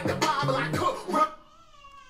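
Hip-hop track with a rapped vocal over a steady bass beat, cut off suddenly about a second in as it is paused. A faint, drawn-out high-pitched tone follows, falling slightly in pitch.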